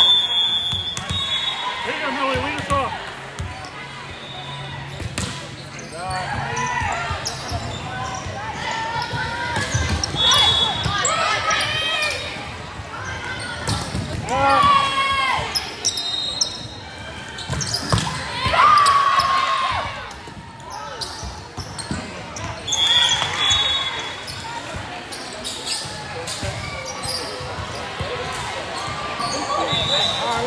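Volleyball gym ambience: players and spectators shouting and cheering, with a volleyball being hit and bounced on the court. Short high referee whistle blasts sound several times.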